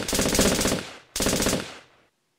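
Rapid automatic-gunfire sound effect: a burst that breaks off under a second in, then a second, shorter burst that fades out near the end.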